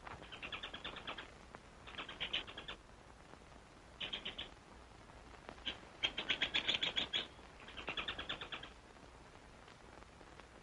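A squirrel chattering in five bursts of rapid, evenly pulsed calls, the longest and loudest about six seconds in.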